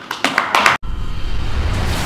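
Brief clapping from the room that cuts off abruptly under a second in, followed by the start of an outro music sting with deep bass.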